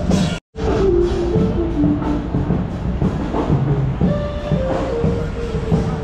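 Music with a simple stepping melody over a steady low rumble; the sound drops out completely for a moment about half a second in.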